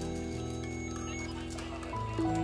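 Instrumental electronic music: held, sustained chords with light clicking sounds over them in the first part.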